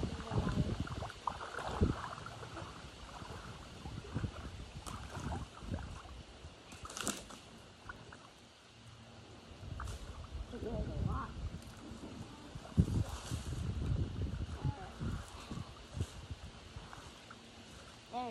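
Rubber boots wading through shallow lake water, with water sloshing and splashing at the steps and a few sharper splashes about 7 and 13 seconds in.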